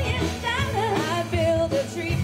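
Live band playing a song: a sung melody over guitars, keyboard and drums.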